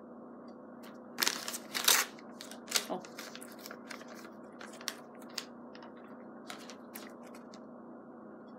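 Paper instruction booklet rustling and crinkling as it is handled and its pages turned, loudest in a burst of crinkling from about one to two seconds in, then lighter scattered rustles and small taps.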